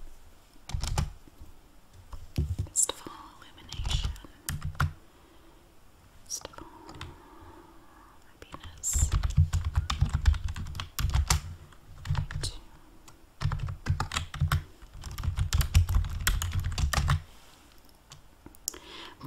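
Typing on a computer keyboard: quick runs of key clicks come in several bursts, with short pauses between them.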